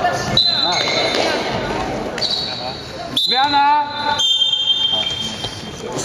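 Basketball game in a large echoing sports hall: players shouting and a ball bouncing on the court, with several high, steady tones, the longest lasting about two seconds near the end.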